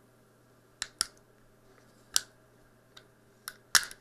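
Sharp, separate clicks of metal and polymer pistol parts as a Sig Sauer P320's takedown pin is worked back into the subcompact grip module, about half a dozen over four seconds, the loudest pair near the end.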